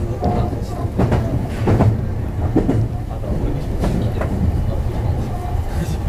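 Meitetsu electric train running at speed, heard from inside the car: a steady low rumble of wheels on rails with several sharp clicks over rail joints.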